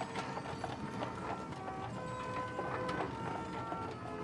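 Hooves of a team of draft horses clip-clopping on pavement at a walk: many quick, irregular clops.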